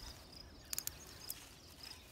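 Nylon zip tie being pulled tight around PVC pipe: a quick run of small clicks a little under a second in, then one more click.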